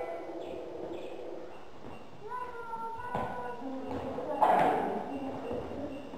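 Children's high voices calling and chattering without music, with one louder outburst about four and a half seconds in.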